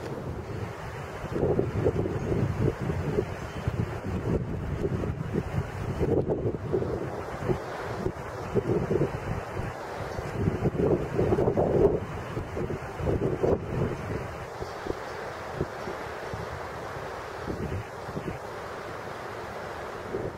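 Wind blowing on the camera's microphone, coming and going in uneven gusts.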